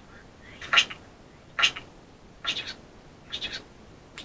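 Spirit box putting out four short, choppy bursts of scanned radio sound, about one a second, the first two the loudest.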